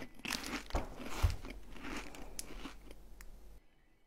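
Someone biting into and chewing a KitKat wafer bar: crisp, crackly crunching that thins out and stops about three and a half seconds in.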